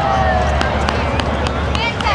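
Stadium crowd talking and calling out, an outdoor hubbub with several sharp clicks and a brief rising call near the end.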